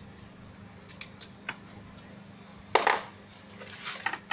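Hands moving wiring and parts in a car's engine bay: a few light clicks about a second in, a louder clatter of clinks just before three seconds, then more clicks, over a steady low hum.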